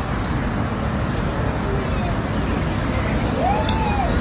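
Steady rumble and hiss of road traffic picked up outdoors by a phone microphone, with a short tone that rises and falls near the end.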